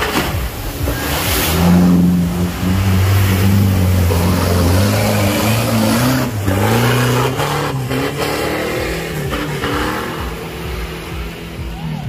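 Off-road 4x4's engine revving hard under load in deep mud, its pitch holding steady at first, then rising and falling with the throttle. There are a couple of short knocks partway through.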